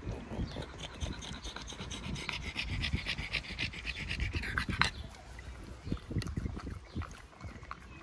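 A pug panting fast and evenly, mouth open, as it cools itself down while resting in summer heat. The panting is strongest early on and eases off about five seconds in.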